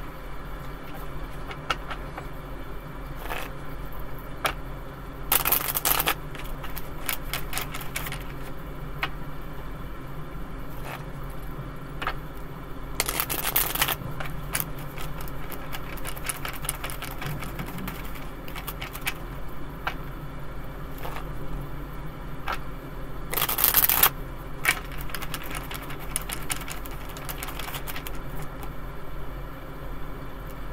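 A deck of tarot cards being shuffled by hand: a steady run of light card clicks and flicks, with three louder flurries about five, thirteen and twenty-three seconds in, over a steady low hum.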